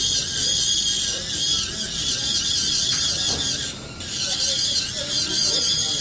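Dental laboratory handpiece spinning an acrylic bur against the edge of an acrylic special tray, trimming it down: a loud, steady high-pitched whine that drops out briefly about four seconds in.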